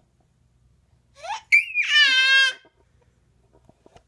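Infant's voice: a short rising cry about a second in, then one loud, high-pitched squeal held for about a second that falls away at its end.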